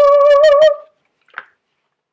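A woman's excited "woo!", held on one steady note and ending under a second in, followed by a brief faint sound.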